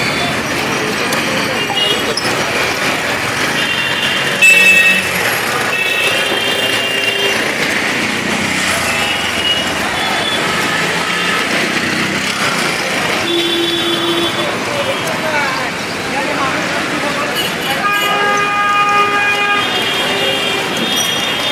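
Busy outdoor street-market din: people talking over traffic, with vehicle horns tooting several times. The loudest moment is a short burst about four and a half seconds in.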